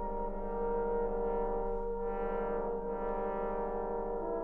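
Brass band holding long, sustained chords, with a brighter swell about two seconds in.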